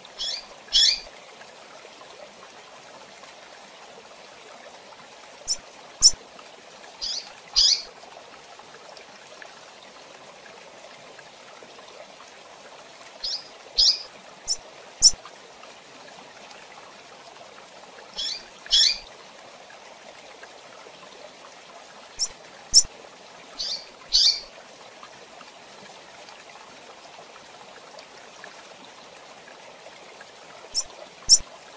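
Female double-collared seedeater (coleiro) giving short, high chirping call notes, mostly in pairs, in clusters about every five to six seconds, over a steady low hiss.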